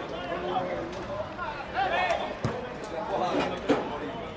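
Voices calling and shouting across a football pitch over outdoor crowd noise, with one sharp thud about two and a half seconds in.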